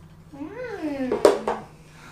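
A cat meowing once: a long call that rises and then falls in pitch, with a sharp knock about a second in.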